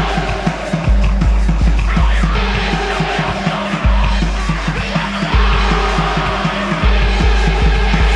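Instrumental metalcore passage: distorted guitars and bass played over rapid, driving drums, with the low bass notes changing every second or so.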